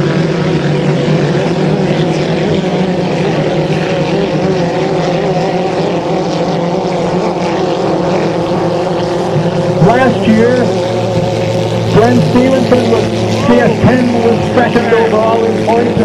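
Racing hydroplane engines droning steadily at speed, heard across the water, the pitch holding fairly level.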